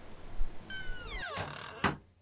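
A low thump, then a door's hinges squeaking in a high, falling whine as it swings shut, ending in a sharp knock as the door closes.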